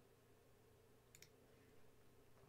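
Near silence with a couple of faint computer mouse clicks about a second in.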